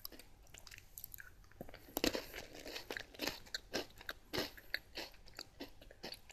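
Close-miked mouth sounds of someone biting into and chewing a Meiji Kinoko no Yama milk caramel chocolate snack: its crisp cracker stem breaks in irregular crunches, starting about two seconds in.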